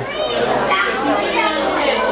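Children's voices, several of them talking and calling over one another.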